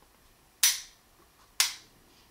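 Two sharp metal clicks about a second apart as the ambidextrous thumb safety of a Cabot Guns Commander 1911 is flicked on and off; its detent is not as taut or positive as it should be.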